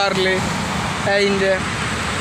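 A person's voice in two short phrases over a steady rushing background noise.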